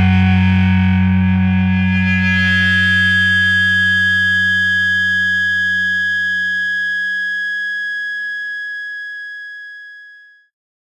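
The last chord of a mathcore song: a distorted electric guitar chord left ringing and slowly dying away. Its low notes fade out about eight seconds in, and a high ringing tone lingers until it dies away right at the end.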